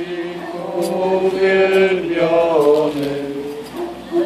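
Voices singing a slow Eucharistic hymn in long held notes, the melody stepping down about halfway through.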